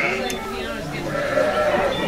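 Sheep bleating, with a longer held call in the second half.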